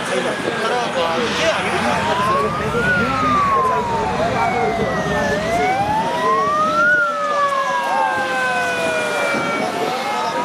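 Emergency vehicle sirens wailing, one rising and falling slowly about once every four seconds, with other sirens at different pitches overlapping it, over a crowd's chatter.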